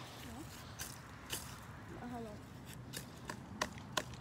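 A few light, irregular knocks of a wooden stick tapping a young tree trunk, with faint voices in between.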